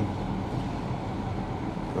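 Steady road and tyre noise of a car driving at speed, heard from inside the cabin.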